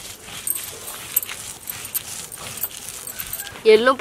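Stone roller rubbing and scraping over a flat stone grinding slab (ammikal), grinding a wet paste of green chillies and seeds, a soft steady gritty scraping. A woman starts speaking near the end.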